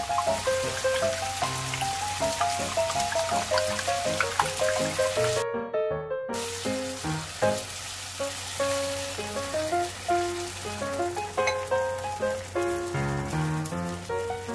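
Background music with a light melody over the sizzling of beaten egg poured into a hot frying pan of tomatoes. Both cut out for about a second near the middle.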